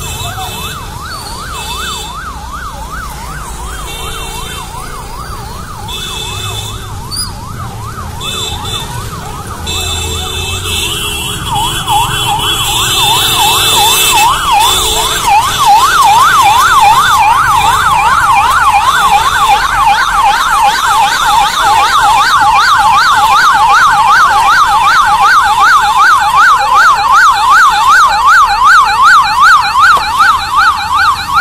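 Electronic police car siren in a fast rising-and-falling yelp, faint at first, then growing much louder about twelve seconds in and staying loud.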